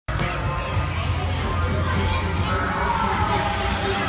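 Crowd din of many children shouting and playing, with a steady low rumble underneath.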